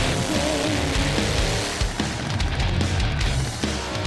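Loud backing music on the soundtrack.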